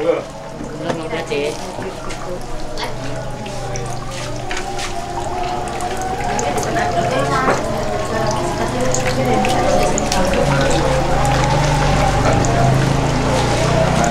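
Busy food-stall sounds: indistinct chatter with frequent short clinks of a metal ladle and spoon against pots, and stew being ladled out. A low hum grows louder in the second half.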